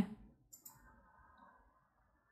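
Two faint, short clicks a little after half a second in, from a metal crochet hook as stitches are worked in yarn.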